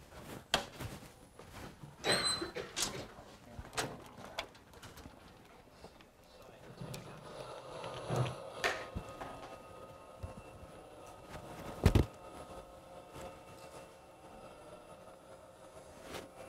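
Quiet room noise in a lecture hall: scattered small knocks and clicks, with a louder thump about twelve seconds in. A faint steady hum comes in during the second half.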